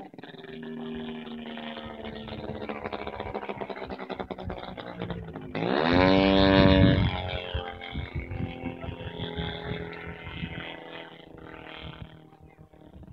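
Radio-controlled Yak 54 aerobatic model plane in flight, its motor and propeller droning with the pitch wandering as it manoeuvres. About five and a half seconds in it suddenly grows louder as it passes close, the pitch falling steadily as it goes by, then fades back to a lower drone.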